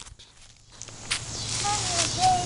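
Footsteps crunching on gravel, quiet at first and growing louder from about halfway through, with a brief faint child's voice near the end.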